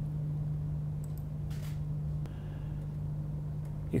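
Steady low hum of running studio equipment, which drops in level a little after halfway, with a few faint clicks and a brief soft rustle about one and a half seconds in.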